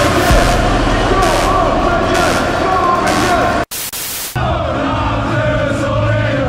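Loud music heard over a stadium crowd, broken about two-thirds of the way through by a sudden short gap and a burst of hiss, after which the crowd of football fans is heard chanting.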